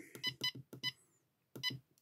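Vatrer battery monitor beeping at each press of its arrow button while the alarm setting is stepped up: a quick run of short beeps in the first second, then one more about a second and a half in.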